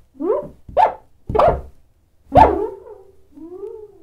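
Squeaky cartoon sound effects for an animated bar of soap slipping and wobbling: four short pitched squeaks in quick succession, the loudest about two and a half seconds in, then a softer, longer squeak that bends in pitch near the end.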